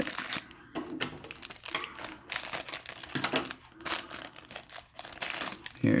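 Thin clear plastic packaging crinkling and rustling in irregular bursts as fingers work to open a small bag.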